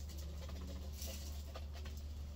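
Faint light plastic clicks and rubbing as the white plastic lid and bowl of a small food chopper are turned in gloved hands, over a steady low hum.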